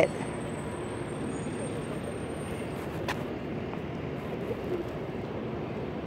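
Steady street traffic noise, an even rumble of passing vehicles, with a single faint click about three seconds in.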